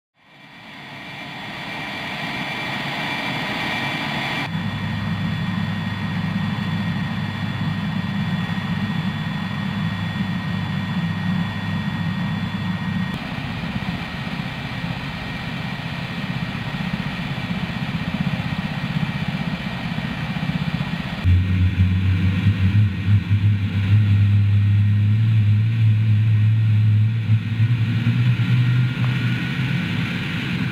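Boeing AH-64 Apache helicopter running on the ground: the twin turboshaft engines whine steadily under the noise of the turning rotors, with the sound fading in at the start and changing abruptly a few times. About two-thirds of the way in, the low, pulsing beat of the rotor blades becomes much louder and stays the loudest part.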